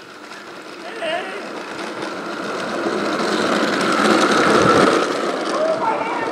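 Razor Flash Rider 360 drift trike rolling and scraping along asphalt on its caster wheels, a coarse grinding that builds louder over the first few seconds and peaks near the end.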